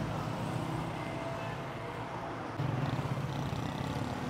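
Street traffic: a steady low hum of passing cars and motorcycles, which grows louder about two-thirds of the way through as a vehicle comes closer.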